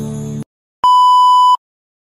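Music cuts off about half a second in; then a single steady, high electronic beep sounds for under a second.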